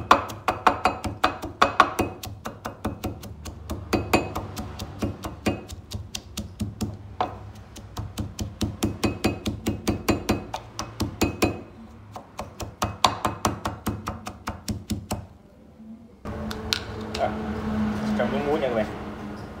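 Pestle pounding sliced lemongrass, red chilies and garlic in a mortar: rapid, even knocks about four or five a second, in runs with short pauses, stopping about fifteen seconds in.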